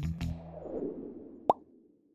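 Background music trails off, then a single short pop sound effect about one and a half seconds in, a quick upward blip, as the quiz cuts to its next question.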